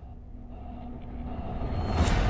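Cinematic trailer sound design: a low rumble that swells steadily louder, building toward a loud hit at the very end.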